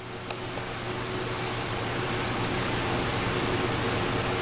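Laptop cooling fan spinning up as the notebook restarts, a steady whooshing hiss with a low hum that grows louder over the first second or so and then holds. A single click about a third of a second in.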